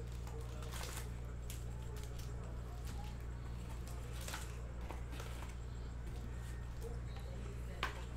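Foil trading-card packs crinkling and cardboard rustling as the packs are pulled out of a hobby box and stacked by hand: a few separate short crinkles, the sharpest just before the end, over a steady low electrical hum.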